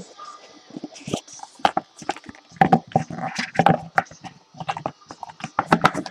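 A trading-card box being opened and its cards handled: irregular light clicks, taps and rustles of cardboard and card.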